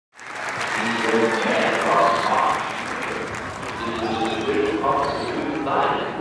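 Audience applauding, with people's voices heard over the clapping.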